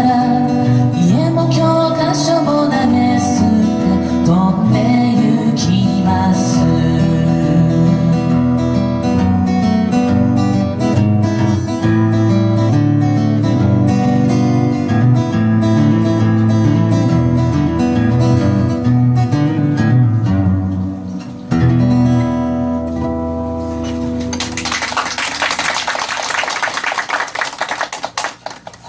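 Acoustic guitar playing the closing bars of a folk song, with a brief pause about three quarters of the way through. Near the end, audience applause breaks out.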